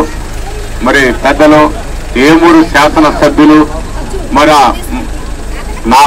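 A man making a speech into a microphone, delivered in phrases with short pauses between them, over a steady low hum.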